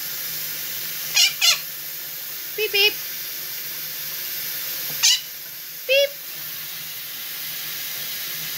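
Quaker parrot (monk parakeet) mimicking a beep: short, high-pitched 'beep' calls, two quick pairs and then two single beeps a second apart. A steady hiss runs behind them.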